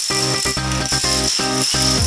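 Background music over the continuous clatter of plastic dominoes toppling in long chains.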